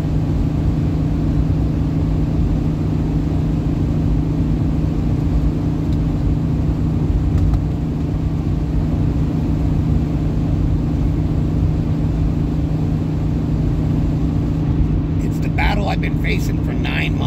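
Steady drone of a car in motion heard from inside the cabin: engine and tyre-on-asphalt noise with a constant low hum.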